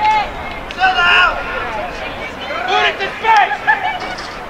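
Several short shouted calls from players and coaches, one about every second, none of them clear words.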